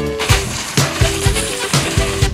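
Background music with a steady drum beat and held melodic notes.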